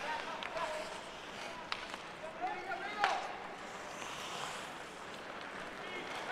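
Ice hockey arena ambience: a low murmur with faint, distant shouts from players and spectators, and a couple of sharp clacks, one about two seconds in and another about three seconds in, as the puck is played.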